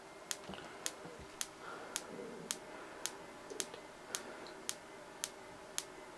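High-voltage xenon flash tube firing over and over, a sharp click with each flash, evenly spaced at about two a second. The rate is set by a unijunction transistor timing circuit triggering an SCR.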